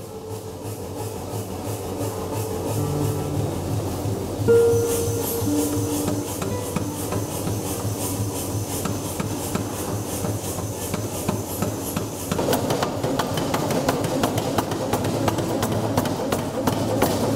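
Mechanical power hammer forging red-hot brass gong blanks, striking in an even rhythm of about two to three blows a second. Ringing tones come in about four seconds in and fade, and the clatter grows denser in the last few seconds.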